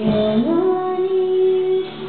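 A woman singing a love song into a handheld microphone: her voice slides up about half a second in and then holds one long note.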